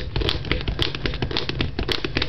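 Ankle stabilizer strap being pulled snug through its buckle on an inline skate: a quick, irregular run of small clicks and rustling.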